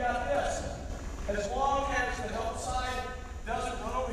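A man talking, echoing in a gymnasium, with a few sharp knocks of a basketball bouncing on the hardwood court.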